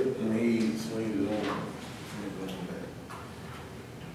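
Soft, indistinct voices talking in a room, fading out after about two seconds, with a few faint knocks or clicks.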